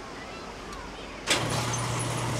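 A car engine running at a steady low hum, coming in suddenly about a second and a half in, as a car pulls up to the gate.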